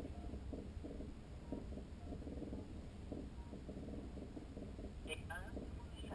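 A steady low rumble with faint, muffled voices over it, and a few short higher-pitched sounds about five seconds in.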